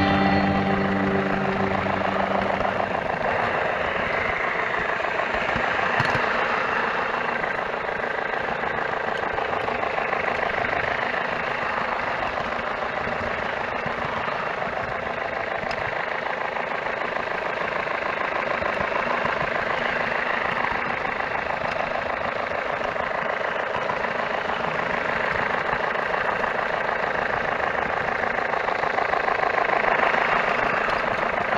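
H0-scale model train running along the track, a steady whir of its small motor and the rattle of wheels on rail, heard from a camera riding on the train. Music fades out in the first two seconds.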